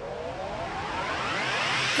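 A rising whoosh sound effect: a swelling noise with many tones gliding upward together, growing steadily louder.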